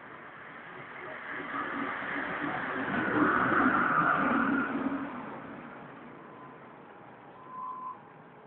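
A motor vehicle passing by, its sound swelling over a few seconds and fading away again, with a short tone near the end.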